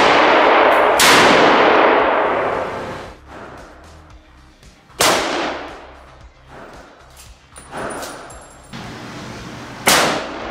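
Gunshots inside an indoor shooting range: three loud reports, about a second in, about five seconds in and right at the end, each followed by a long echoing tail. A few small clicks and knocks fall between them.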